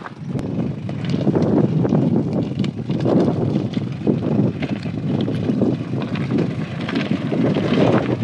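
A 4x4 vehicle driving on a rough dirt track: a steady noise of tyres on stones, with many irregular knocks and rattles.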